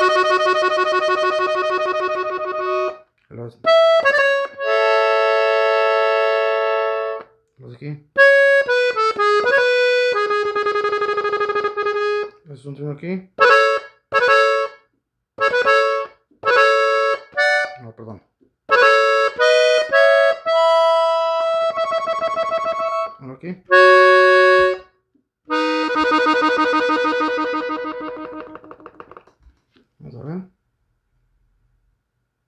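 Gabbanelli three-row diatonic button accordion tuned in E, playing phrases of a norteño song in B major. Long held chords alternate with runs of short repeated chords, about two a second, with brief pauses between phrases.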